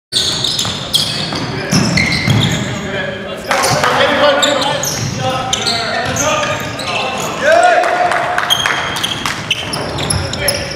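Sound of a basketball game on a gym's hardwood court: the ball bouncing, sneakers squeaking in short high chirps, and players' voices calling out.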